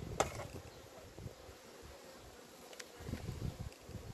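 Honeybees buzzing faintly and steadily around an open hive. Two sharp clicks, one just after the start and one near three seconds in, come from the wooden hive frames being handled.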